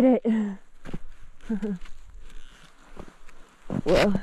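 A woman's short, wordless vocal sounds while cross-country skiing through deep snow: one at the start, a shorter one about a second and a half in, and another near the end. Between them, skis scuff through the snow and a few sharp clicks come about a second in.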